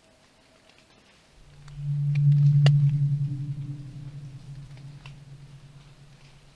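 A long, low cry carrying through the forest, held on one steady pitch: it swells about a second in and fades slowly over some four seconds. It is heard as a very powerful, woman-like scream whose source is unknown.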